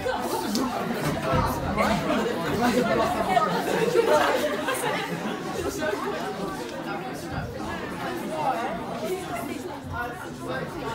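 Indistinct chatter of a small group of people talking over one another in a room, with no clear words.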